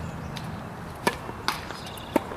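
Tennis serve: a racket strikes the ball with a sharp pop about a second in, followed half a second later by a second pop from the ball in play.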